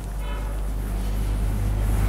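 Whiteboard duster rubbing across the board as it is wiped clean, a steady scrubbing hiss that grows slightly louder toward the end, over a constant low electrical-type hum.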